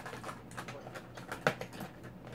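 Makeup containers clicking and rattling against each other and the sides of a plastic storage drawer as a hand rummages through it, with a sharper knock about one and a half seconds in.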